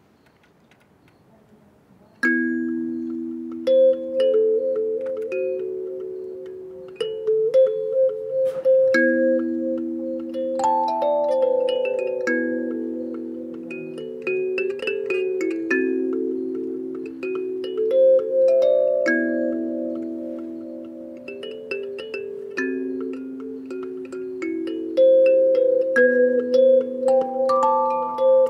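Wooden box kalimba plucked with the thumbs in an improvisation that begins about two seconds in, with ringing metal tines. A low two-note figure repeats every few seconds beneath a faster melody in the higher tines.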